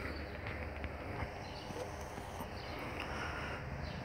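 Quiet background noise: a steady low hum under a faint hiss, with no distinct event.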